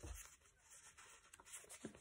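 Near silence with a faint rustle and a few light taps of paper flashcards being handled.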